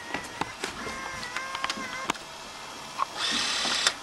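Sharp clicks from a camcorder being worked during tape playback, over faint wavering tones. Near the end comes a loud burst of hiss lasting under a second.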